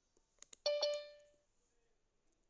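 Zoom notification chime on a phone: two quick strikes of the same bright tone that ring out and fade within about half a second, just after two short clicks. It is the alert that a participant is waiting in the waiting room.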